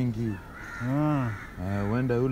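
A man's voice with long, drawn-out vowels: one long call rising and falling in pitch about a second in, and another starting near the end.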